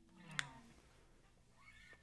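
The last chord of an electric guitar dies away, followed about half a second in by a short faint sound falling in pitch with a sharp click. The rest is near-quiet room tone.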